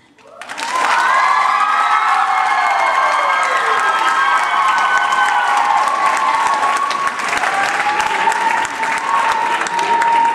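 Audience applause and cheering with long high-pitched whoops and screams, starting loud about half a second in right after the a cappella song ends and holding steady.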